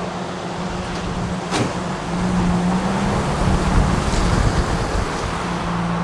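A car engine idling with a steady low hum over a constant hiss. The rumble swells louder from about two seconds in and eases back near the end. There is a single sharp click about a second and a half in.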